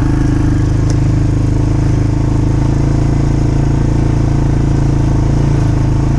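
ATV engine running steadily as the four-wheeler is driven along slowly, towing a dragged hog.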